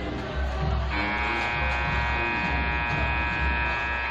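Gymnasium scoreboard horn sounding one steady, buzzy blast for about three seconds, starting about a second in as the timeout clock runs out to zero, signalling the end of the timeout. Music with a steady bass beat plays underneath.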